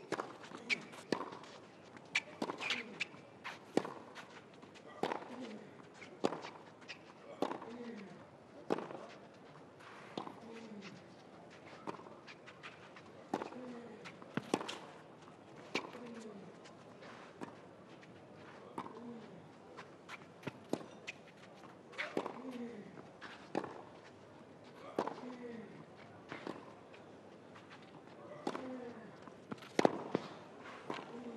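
Tennis ball struck back and forth in a long baseline rally on a clay court: sharp racket hits about every second or so, alternating with ball bounces, and a short grunt falling in pitch from a player on many of the shots.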